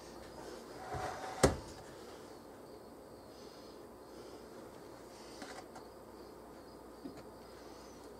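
A metal spatula spreading frosting knocks once sharply against the metal sheet pan about a second and a half in. A few faint ticks of the spatula follow later.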